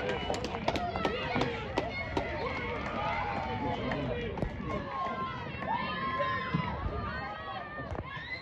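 Several voices shouting and calling out across a football pitch just after a goal, with a few sharp claps in the first couple of seconds.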